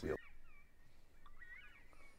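Northern bobwhite covey calls: a few faint, short whistled notes that rise and fall, several overlapping about a second in.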